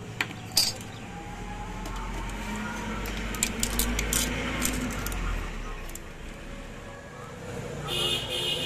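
Light, sharp clicks of stiff insulating paper slot liners being cut and pushed into the slots of a steel generator stator. There is a single click about half a second in, then a cluster in the middle. Under them a low rumble from a passing vehicle swells and fades away.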